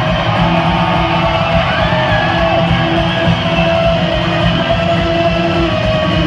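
Solo acoustic guitar instrumental played live through an arena sound system and heard from the crowd, with held notes ringing over a steady picked pattern.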